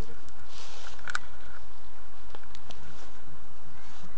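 Steady low wind rumble on the microphone, with the rustle of a paraglider harness's straps being handled: a short rustle about half a second in, a sharp buckle click just after a second, and a few lighter ticks after that.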